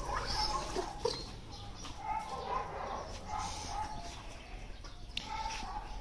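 Dogs play-wrestling, heard faintly, with soft scattered vocal sounds.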